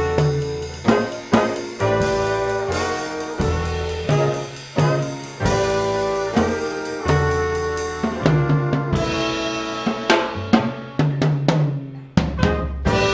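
Student jazz ensemble playing live: the horns and upright bass hold a series of chords about a second long each, with sharp drum hits and short fills between them.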